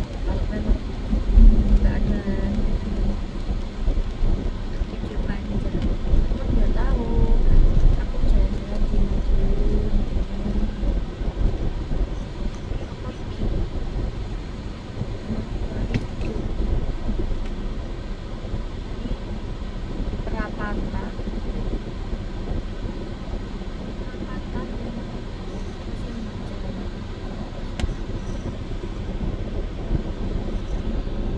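Low rumble of a car heard from inside its cabin, louder while the car is moving early on and lower and steadier after about twelve seconds once it is stopped at a red light, with faint voices.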